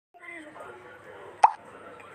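A faint voice talking, then a single short pop about one and a half seconds in: an app's button-tap sound as a menu choice is made.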